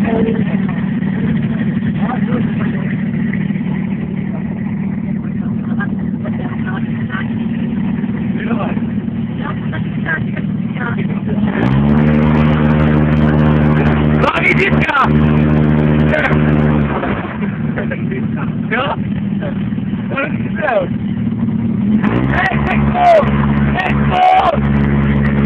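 An engine running steadily throughout. It revs up to a higher, louder pitch about twelve seconds in, settles back a few seconds later, and revs up again near the end. People's voices are heard over it.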